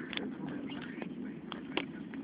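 About five sharp clicks and knocks at uneven spacing over a faint background.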